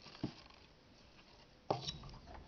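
Handling noises of a hot glue gun and a wooden tray: a soft knock about a quarter second in and a louder, sharper knock near the end.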